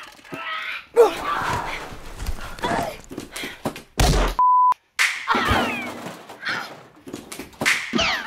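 A scuffle: thuds and knocks with voices crying out and groaning, the loudest thud about a second in. Near the middle a short steady electronic beep sounds, followed by a moment of dead silence.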